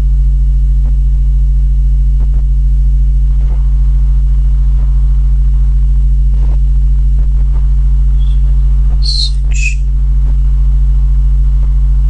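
Loud, steady low electrical mains hum picked up by the recording, with a few faint clicks and a couple of brief sharper sounds about nine to ten seconds in.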